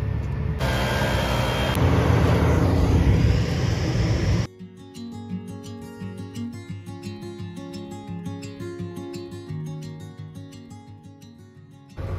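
Loud machinery noise for the first four seconds or so, with an abrupt change about half a second in. It then cuts off suddenly to quieter background music with held notes over a steady rhythm of short notes.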